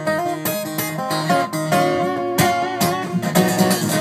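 Steel-string acoustic guitar played solo in an instrumental passage: rhythmic picked and strummed chords, with a quick run of strokes near the end.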